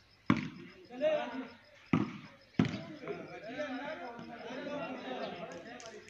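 A volleyball struck by hand three times, sharp slaps in the first three seconds, with players' shouts and calls around and after the hits.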